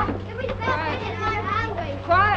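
A crowd of young children chattering and calling out all at once, many voices overlapping.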